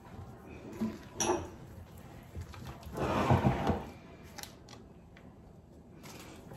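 Gloved hand working cornstarch into a soft, creamy batter in a large ceramic dish: squelching and scraping, with a couple of short knocks about a second in and a louder scrape lasting about a second near the middle.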